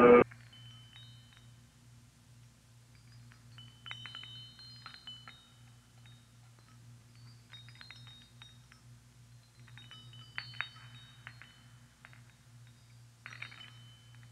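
Quiet passage of an electronic track: the louder music cuts off right at the start, leaving a steady low drone with sparse clusters of short, high chime-like tones every few seconds.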